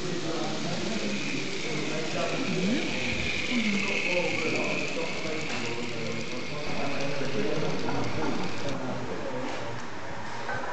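A model train's electric motor and gears whining as it runs along the layout. The whine swells and fades over the first few seconds, with people chatting in the background.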